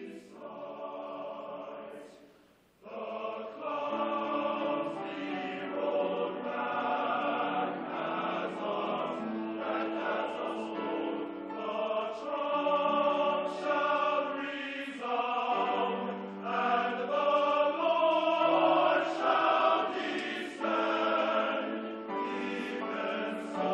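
Men's choir singing a slow piece in sustained chords, with a brief pause about two seconds in before the voices come back in fuller.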